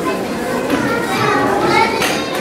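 Children's voices talking and calling out, several at once, with no clear words.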